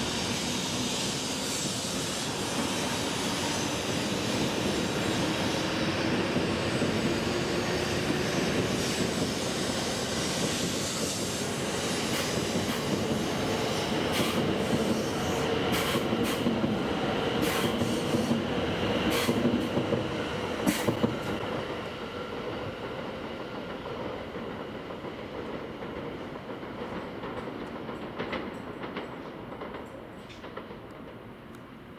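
E7 series Shinkansen train pulling away and accelerating: a steady running noise with a whine that rises in pitch, then a run of sharp clicks from the train over the track about halfway through. The sound fades over the last third as the train draws away.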